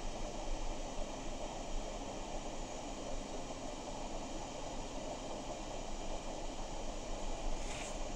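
Steady low hiss of room noise, with no distinct sounds standing out.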